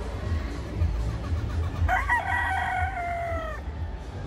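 A gamefowl rooster crowing once: a single call of under two seconds beginning about two seconds in, held level and then falling slightly at the end.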